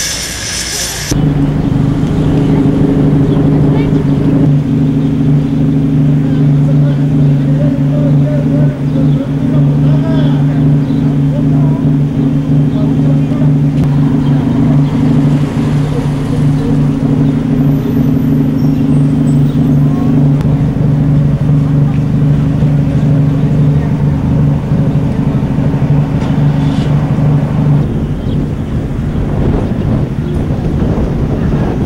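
A vehicle engine running at a steady idle: a loud, unchanging low drone that starts about a second in and stops shortly before the end.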